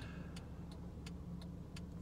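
Car's hazard-light flasher clicking steadily, about three clicks a second, over a faint low hum inside the parked car's cabin.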